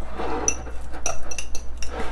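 Metal fork clinking and scraping against a small ceramic bowl while mashing avocado, an irregular run of sharp taps.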